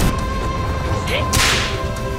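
A whip-like whoosh sound effect about a second and a half in, over a steady low rumble and a held tone.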